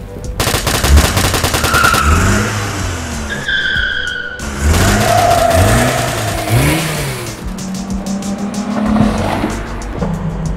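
A Ford Mustang's engine revving several times, each rev rising and falling in pitch, with short high tyre squeals in between. A fast rattle runs for about a second and a half near the start. The engine settles to a steady low note in the last couple of seconds.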